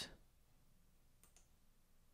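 Near silence with a faint double click of a computer mouse, press and release, a little over a second in.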